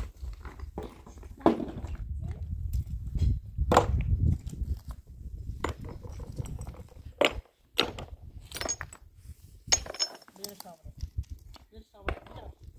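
Flat stones clacking against one another as they are picked up by hand and dropped into a pile in a round sieve: irregular sharp knocks over a low rumble.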